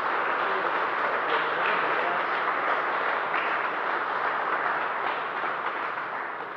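Applause from a small group of people, tapering off near the end.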